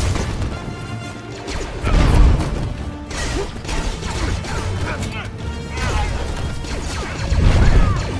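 Film battle soundtrack: an orchestral score under blaster fire and crashing impacts. Heavy low booms swell about two seconds in and again near the end.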